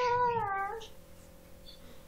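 A single high-pitched, wavering call lasting under a second, heard over a video-call connection, followed by a faint steady hum.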